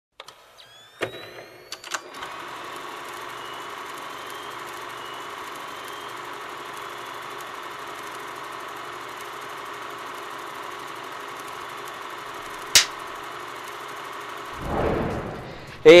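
Film projector sound effect: a click about a second in and the motor whining up in pitch, then a steady mechanical whirr. A single sharp click comes about 13 seconds in, and a swell of noise just before the end.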